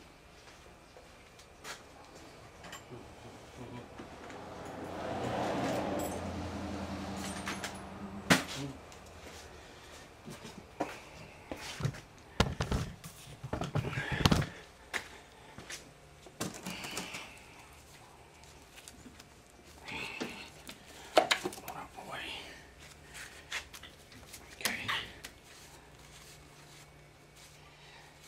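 Scattered knocks, clunks and rattles of hands handling tools and parts in a workshop. About three seconds in, a low hum rises, holds for a few seconds and stops.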